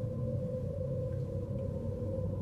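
A steady droning tone over a low rumble, unchanging throughout.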